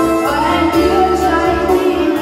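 A woman singing a slow Vietnamese song through a microphone over live electronic keyboard accompaniment with a steady beat, holding and gliding between notes.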